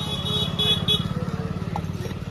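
A motorcycle engine running with a steady, rapid low throb. A high-pitched intermittent beeping, like a horn, sounds during the first second.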